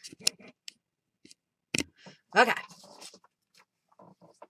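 A few scattered sharp clicks and soft rustles from paper and small objects being handled and moved on a work table.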